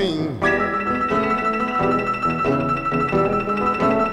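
Electric blues guitar playing an instrumental fill between vocal lines, with plucked notes under a high note held steady for about three seconds. The singer's last word trails off with a falling pitch at the very start.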